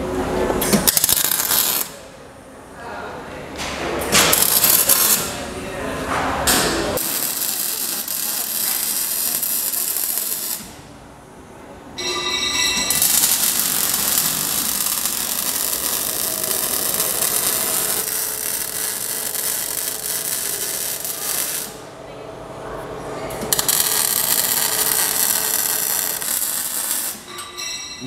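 MIG welding steel chassis tubing: the arc's steady hiss in runs of several seconds, broken by short pauses about two, eleven and twenty-two seconds in.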